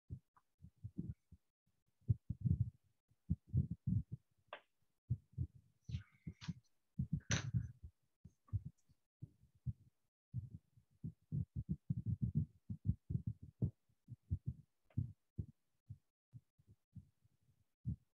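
Faint, irregular soft low thumps and knocks, with a few brief higher clicks and a short scrape, carried over a video-call microphone.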